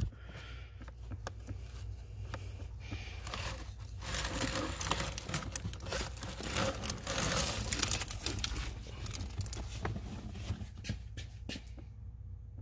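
Cabin air filter being pulled out of its plastic housing behind the glove box: rustling, scraping and crinkling of the filter and the dry leaves on it against the plastic, loudest midway, with a few sharp clicks near the end.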